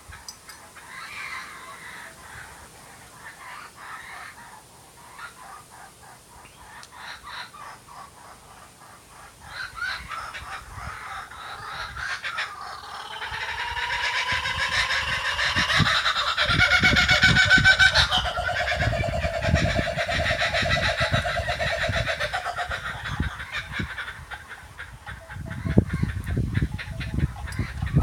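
Laughing kookaburras calling: soft chatter at first, then from about ten seconds in a chorus of rapid laughing calls builds to a loud peak, eases off, and flares again near the end. The calls come from adults teaching their young to laugh, with the babies joining in.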